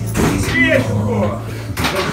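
A man's voice over a low steady hum from the band's amplified instruments, with one sharp knock near the end.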